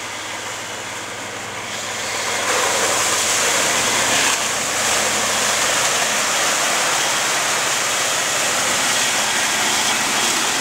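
Four-wheel-drive pickup on mud tyres driving through a muddy trail toward and past the listener: the engine runs under a dense rushing noise of tyres and mud, which grows louder about two and a half seconds in as the truck comes close.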